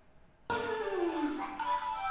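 Near silence, then a recorded chant track for a children's English lesson starts abruptly about half a second in: music with a gliding, falling tone.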